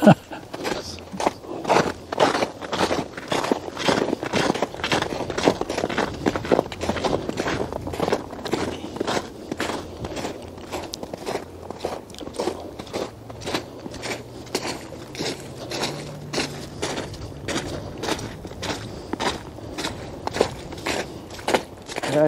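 Footsteps crunching on a snowy trail as two people walk, in a steady rhythm of a couple of steps a second.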